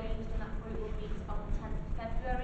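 Indistinct speech only: a voice talking over a steady low rumble.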